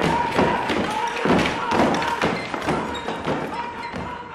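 Repeated heavy thumps and knocks, about two a second, from objects and furniture being knocked about at a dinner table during a scuffle, with voices over them.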